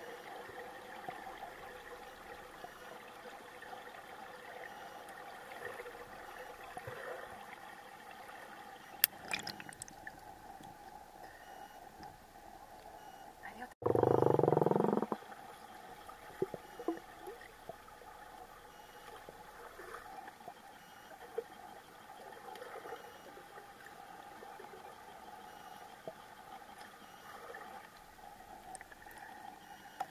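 Underwater sound of a swimming pool heard through a camera's waterproof case: a steady faint hum with a few held tones. About fourteen seconds in comes one loud, muffled burst lasting about a second and a half and falling in pitch, with a sharp click a few seconds earlier.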